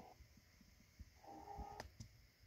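Near silence: faint room tone with a few soft low thumps, a brief faint sound late on, and one sharp click near the end.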